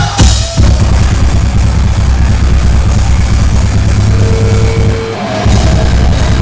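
A heavy rock band playing loud, with electric guitars and a drum kit driving a dense, pounding rhythm. The band stops briefly a little past five seconds in, then comes back in.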